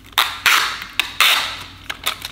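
Sticky tape being pulled off its roll in several quick, sudden pulls, about five in two seconds.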